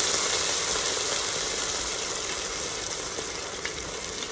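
Water being poured into a hot pot of onion, celery and garlic softened in oil, sizzling steadily as it hits the hot fat and slowly dying down.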